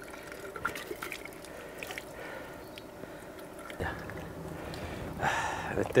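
Water trickling steadily from a stone fountain's spout and splashing below it, with a few small clicks and a low thud about four seconds in.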